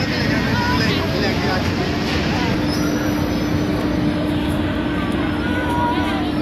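Fairground ambience: a dense, steady mechanical noise from carnival machinery with a steady hum that gets stronger about halfway through, and crowd voices over it.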